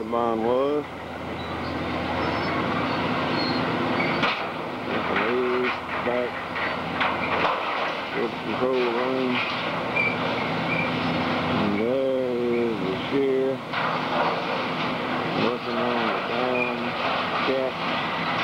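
An excavator with a grapple working a heap of demolition scrap steel: steady machine noise with scattered metallic knocks. Short stretches of indistinct talk come and go.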